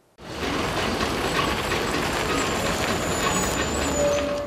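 A small city bus running at a roadside stop, its engine a low steady rumble under even street traffic noise.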